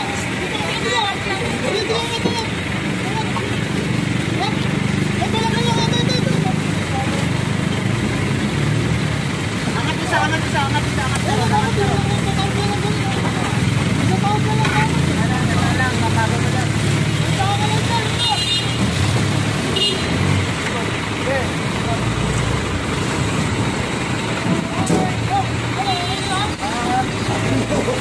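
Street traffic and vehicle engines running steadily, with scattered voices of people talking over it.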